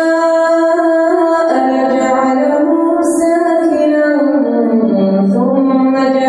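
Quranic recitation: a male imam's voice chanting in a melodic tajweed style, holding long drawn-out notes that slide and step between pitches, with a brief hissed consonant about three seconds in.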